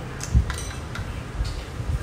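Chopsticks clicking and clinking against a china bowl a few times, with a dull knock on the table about a third of a second in, the loudest sound.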